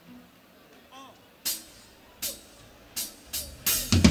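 A drummer's count-in before a song: sharp, bright clicks, two spaced ones followed by four quicker ones, with the full band coming in right at the end.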